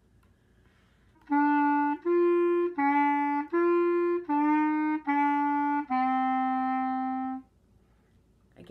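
Clarinet playing a two-measure phrase of a beginner band exercise: seven separately tongued notes that move up and down in pitch, the last one held longer.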